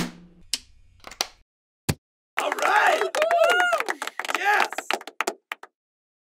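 A few short sharp knocks, then about three seconds of a voice whose pitch swoops up and down, ending abruptly.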